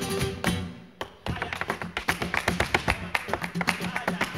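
Flamenco dancer's footwork (zapateado): rapid, even heel and toe strikes of flamenco shoes on the stage, starting about a second in, over flamenco guitar accompaniment.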